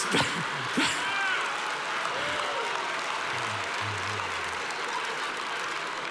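Large audience applauding and laughing: a steady wash of clapping that eases slightly toward the end.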